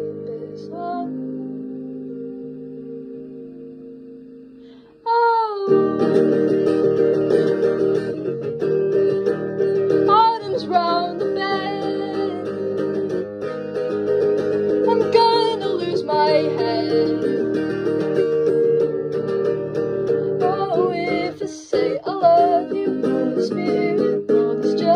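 Guitar-led song in an instrumental passage: a held chord rings and fades for about five seconds. Then the full arrangement comes back in suddenly with guitars and a melody line that bends in pitch.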